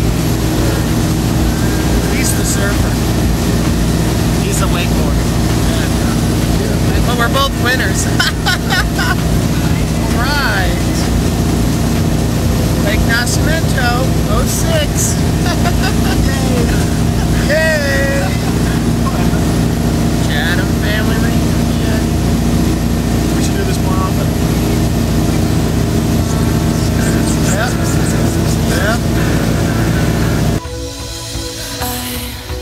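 Motorboat engine running steadily under way while towing, with men talking and laughing close by over it.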